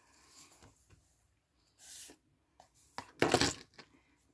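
Soft handling sounds of hands working cotton yarn with a metal crochet hook: a few short rustles, the loudest about three seconds in.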